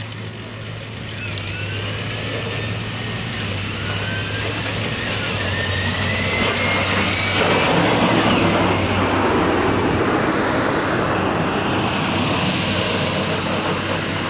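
A tractor's diesel engine running as it drives up and passes close by, with a steady low engine hum and road noise. It grows louder as it approaches and is loudest as it passes about eight seconds in.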